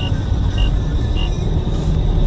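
Car interior while driving: steady low road and engine rumble, with a short high beep repeating about every half second.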